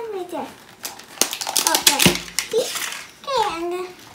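Crinkling and clicking of a plastic LOL Surprise Confetti Pop ball as it is handled and worked open, loudest in the middle. A child's voice makes short sliding calls at the start and about three seconds in.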